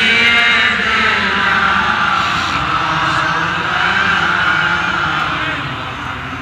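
A man chanting a melodic Arabic devotional recitation into a microphone, holding one long, slightly wavering note for several seconds.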